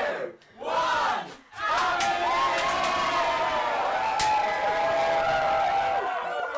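A crowd of young partygoers cheering a drink being downed. It opens with two short shouts, then from about two seconds in many voices join in one long, sustained group cheer. A few sharp clicks sound through it.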